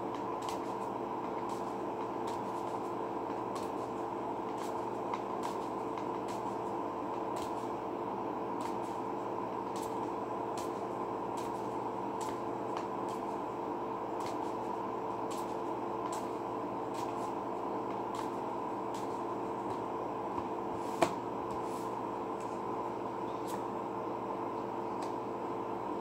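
A steady mechanical hum holding a few fixed tones, such as a fan or appliance running, with faint, irregular ticks of playing cards being handled and one sharper click late on.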